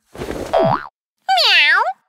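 Cartoon transition sound effects: a whoosh with a sliding tone, then a short boing-like tone that dips in pitch and rises back up.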